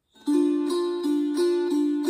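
Wing-shaped gusli (Baltic psaltery) strummed about three times a second on one held chord, starting a moment in. The left-hand fingers mute strings to shape the chord: ring finger on the first degree, middle on the third.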